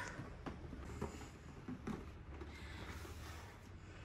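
Faint handling of a cardboard box: a few light taps and knocks as its lid is fitted on and the box is picked up, over low room hum.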